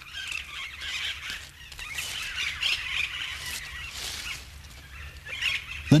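A flock of austral parakeets chattering and squawking, many short high calls overlapping.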